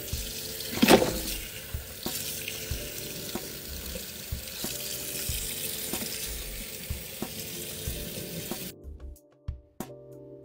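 Kitchen tap water running steadily onto cauliflower florets in a plastic colander, with a louder clatter about a second in. The running water stops abruptly near the end.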